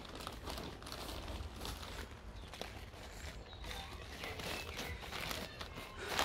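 Compost being scooped by hand from a plastic compost sack and spread into a plastic grow bag: soft, irregular rustling of plastic and crumbling soil.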